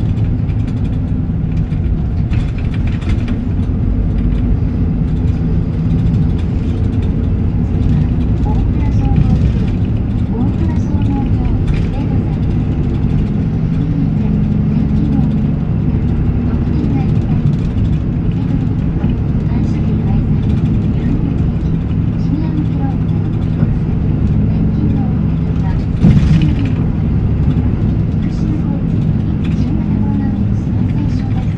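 Isuzu Erga Mio (PDG-LR234J2) city bus's diesel engine running under way, its pitch climbing and dropping several times as the bus accelerates and changes gear. A single sharp knock about 26 seconds in.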